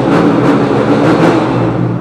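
Yamaha dirt bike engine revving loudly inside a concrete tunnel, its exhaust echoing off the walls.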